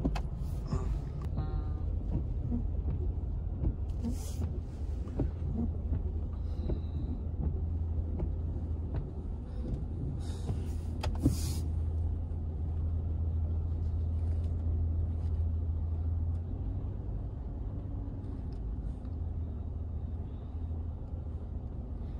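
Steady low engine rumble heard from inside a car cabin, with a few short swishes and one sharp click near the middle; the rumble weakens about three quarters of the way through.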